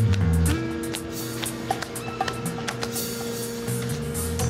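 Background music score: two held tones over a low bass line that steps through a few notes at the start, with scattered light ticks.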